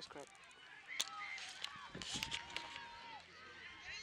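Distant voices of children and spectators on a soccer field. A sharp knock comes about a second in, and a steady held tone lasts about a second near the middle.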